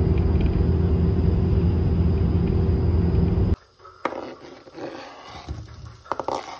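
Steady low engine and road rumble inside a moving city bus, heard from a seat in the cabin; it cuts off abruptly about three and a half seconds in. After that come light kitchen knocks and clatter as diced ham is tipped from a plastic cutting board into a wok.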